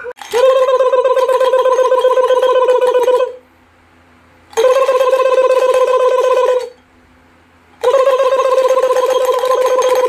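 A loud, buzzing tone held at one steady pitch, sounded three times: about three seconds, then two, then about three, with short gaps between.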